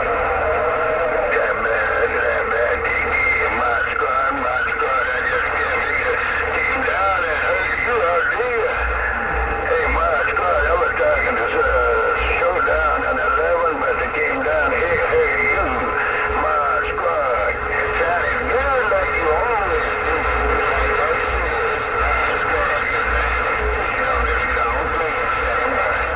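Uniden Grant LT CB radio on channel 6 (27.025 MHz) receiving a long-distance skip signal through its speaker. A far-off station's voice comes through garbled and warbling under static and steady whistling tones.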